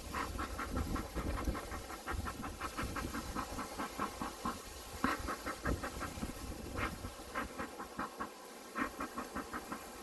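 Bee smoker's bellows pumped in quick puffs, several a second, each a short hiss of air, with a brief lull about eight seconds in. A honeybee swarm hums underneath.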